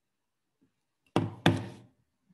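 Two loud knocks about a third of a second apart, a little over a second in, each ringing out briefly.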